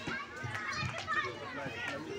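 Background chatter of many children's voices talking and calling over one another, with no single clear speaker.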